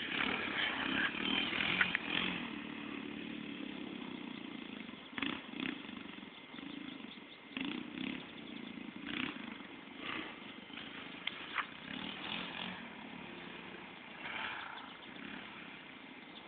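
Dirt bike engine running on a trail, loudest in the first couple of seconds and then fading away, with short surges of throttle.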